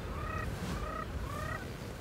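A bird calling: about five short, pitched notes in quick succession, several rising at the end.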